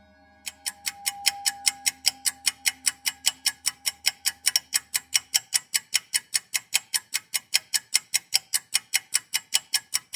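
Steady, rapid ticking of a timepiece, about five ticks a second, starting half a second in. A sustained music drone fades out beneath it over the first few seconds.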